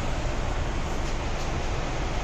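Steady rushing background noise with a low, fluttering rumble and no distinct events.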